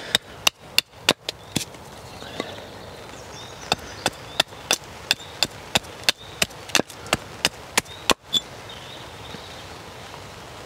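Small carving axe taking quick, light strokes down the face of a split wood spoon blank held upright on a chopping block, tidying the face flat. A few strokes open it, then after a short pause a steady run at about three strokes a second, stopping a little after eight seconds in.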